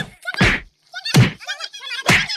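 Three heavy thuds of stick blows in a staged fight: one at the start, one about half a second in, and one just past a second. Short voice cries come between them.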